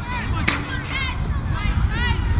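A single sharp smack about half a second in, typical of a soccer ball being struck by a foot, amid short high-pitched calls and a steady low wind rumble on the microphone.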